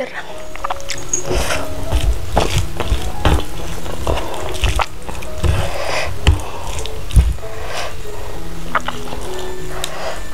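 Background music of soft held notes, over close-miked eating sounds: fingers picking through rice and fried chicken on a plate, with many small clicks and squishes.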